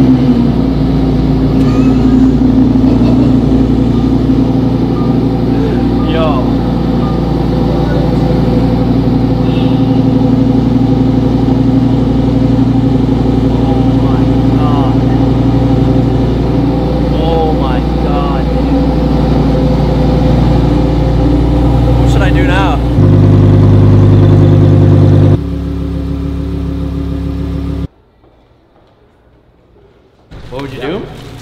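Lamborghini Huracán EVO's 5.2-litre V10 idling steadily just after start-up. It gets louder for about two seconds near the end, then the sound drops away about two seconds before the end.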